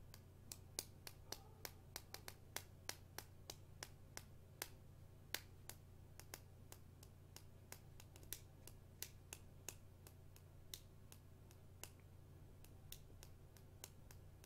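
Faint, irregular sharp clicks, up to a few a second, over a steady low hum.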